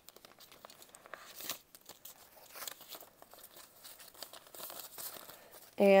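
Paper banknotes and a clear plastic binder envelope softly rustling and crinkling as a stack of cash is pulled out and handled, with a few louder rustles.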